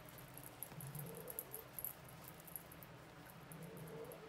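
Stuffing being pushed by hand into a crocheted yarn pumpkin: faint, crackly rustling of the fluffy filling and yarn under the fingers.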